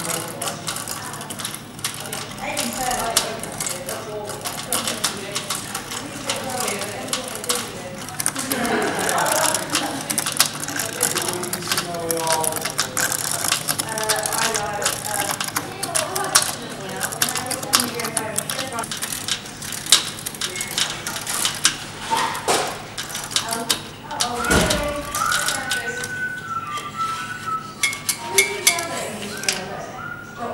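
Hand-worked wooden tea-stirring contraption clicking and rattling without a break as its string linkage swirls a stirrer round the cup, with voices talking in the background.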